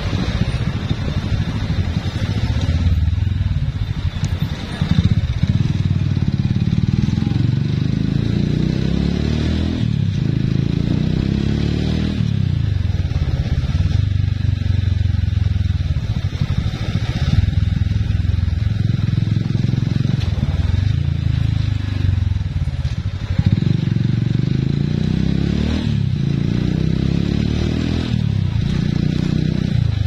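Motorcycle engine heard from the rider's seat while riding along a street, its pitch rising and falling every few seconds as the throttle is opened and eased off.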